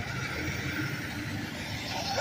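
Semi-truck diesel engine running close by, a steady low rumble.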